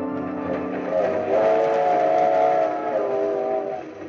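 Organ bridge music: a sustained chord carries on, then a new, higher held chord comes in about a second in and holds until shortly before the end.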